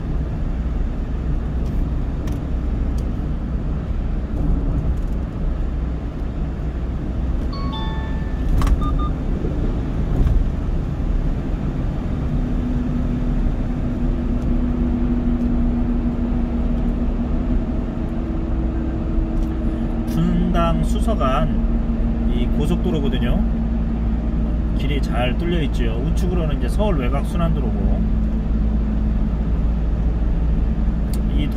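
Steady low road and engine rumble inside a car cruising on an expressway. A short electronic beep sounds about eight seconds in, and a voice is heard briefly twice in the second half.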